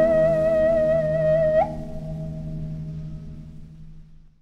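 Sundanese suling bamboo flute holding a long closing note with a light vibrato, cut off with a brief upward flick about a second and a half in. Under it, the 18-string kacapi zither's strings ring on and die away. Kacapi suling music in sorog mode.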